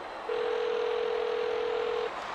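Telephone ringback tone, the ringing heard by a caller: one steady tone lasting nearly two seconds, starting just after the beginning, over a haze of ballpark crowd noise.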